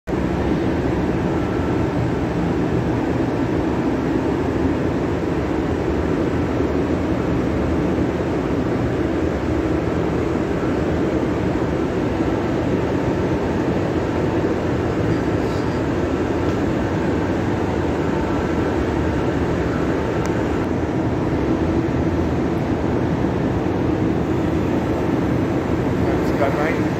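Montreal metro MR-73 rubber-tyred train running slowly along the platform: a steady, even rumble with faint high whining tones from its drive.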